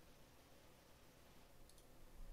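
Near silence: faint room tone, with two faint clicks close together near the end.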